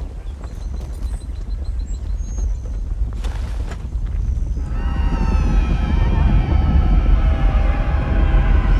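A deep rumble in a film soundtrack, building steadily louder. About five seconds in, a swell of tense music with many wavering high tones comes in over it.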